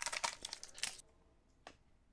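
Crinkling and crackling of a foil trading-card booster pack wrapper being torn open, for about a second, then quiet but for a single light tick.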